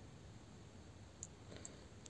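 Near silence: faint room tone with two small, faint clicks about a second and a quarter in and again shortly after.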